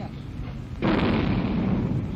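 Loud rumbling location noise on old 16 mm newsfilm sound, starting suddenly about a second in and carrying on steadily.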